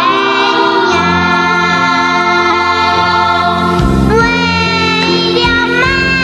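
A child's voice singing a melodic song over instrumental accompaniment, with long held notes. The words sung are 哪怕我走天涯 and then 为了妈妈山高我不怕.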